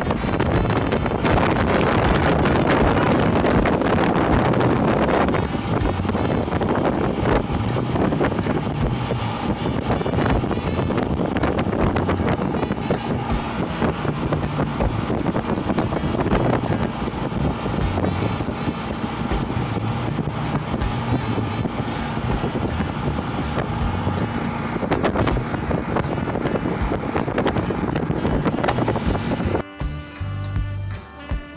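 Motorboat underway: the engine running steadily with wind rushing over the microphone, and background music playing underneath.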